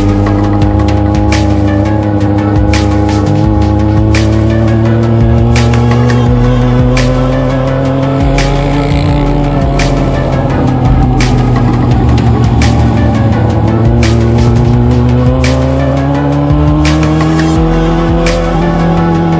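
Yamaha motorcycle engine pulling under steady acceleration in traffic, its pitch rising slowly, dipping at a gear change about ten seconds in, then rising again. Electronic music with a regular beat plays over it.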